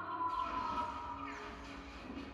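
Live orchestra holding a high sustained note. About a third of a second in, a sudden loud rushing noise with a low rumble cuts in, and sweeping pitch glides come through it in the second half.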